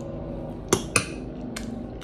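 Metal spoon clinking against a ceramic bowl: two sharp clinks about a quarter second apart, then a fainter one about half a second later.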